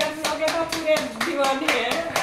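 Hands patting and slapping a round of roti dough between the palms to shape it: quick, even slaps, several a second.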